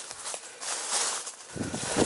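Footsteps on dry leaf litter with leaves rustling underfoot, the steps heavier near the end.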